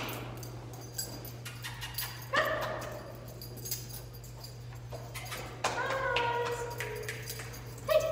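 German shorthaired pointer whining: a short whine about two and a half seconds in, then a longer whine past the middle that slides slightly down in pitch.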